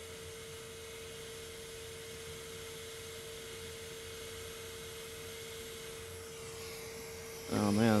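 Hot air rework station blowing steadily while desoldering a small chip: a soft, even hiss of air with a steady whine under it.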